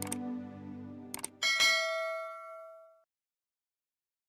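Subscribe-button animation sound effects over the fading end of background music: quick mouse clicks about a second in, then a bright bell ding that rings out and dies away about three seconds in.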